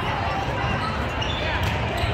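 Busy sports-hall din: overlapping voices of players and spectators with volleyballs bouncing on the hard court floors, all echoing in a large hall.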